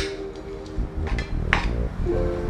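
Metal spoon scooping rice from a ceramic plate, with a couple of sharp clinks against the plate, over background music.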